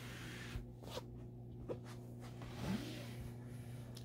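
Faint handling sounds of a fabric storage bin being pulled out of a wooden shelf unit, with a few light knocks, over a steady low hum.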